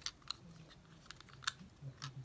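A few faint clicks and taps as a small diecast toy fuel truck is handled against a plastic toy playset.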